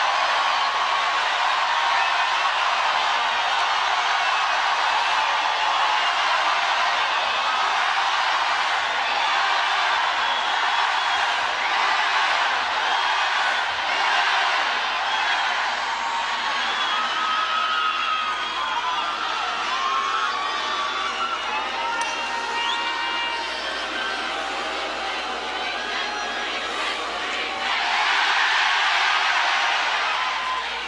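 Large stadium crowd cheering and shouting between songs, a dense wash of many voices with scattered whoops, swelling louder near the end.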